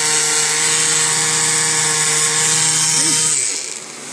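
Electric sander running steadily against a painted glass vase, sanding the paint off its raised bumps to distress it. A bit over three seconds in it switches off and winds down.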